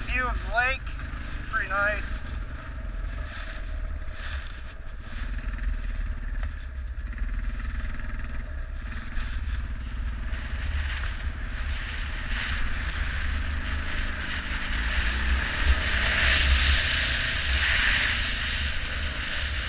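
Beta dirt bike engine running under way, with wind rumbling on the microphone; the engine and road noise rise and get louder toward the end. In the first two seconds there are a few short, high, warbling sounds.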